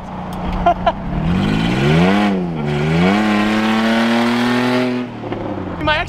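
Jeep Liberty V6 engine accelerating hard. The revs climb, fall back briefly, then climb steadily again over the road noise until the sound cuts off about five seconds in.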